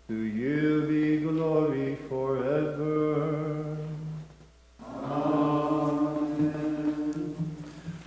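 A solo male voice chanting an unaccompanied Maronite liturgical melody, in two long phrases of held and gliding notes, with a brief pause for breath about four and a half seconds in.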